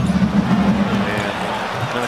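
Steady crowd noise in a basketball arena during play.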